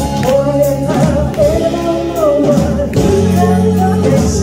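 Live band song with a woman singing the lead vocal over guitar, bass and drums, cymbals struck along the beat.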